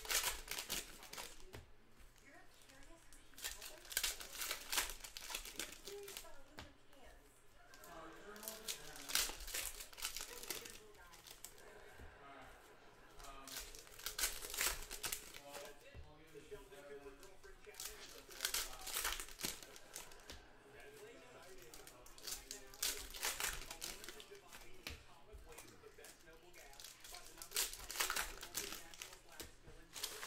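Foil trading-card pack wrappers crinkling in short bursts every few seconds as a stack of packs is handled and shuffled.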